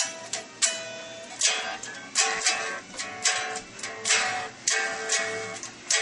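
Black single-cutaway solid-body electric guitar being strummed: about ten chords over six seconds, each struck sharply and ringing briefly before fading.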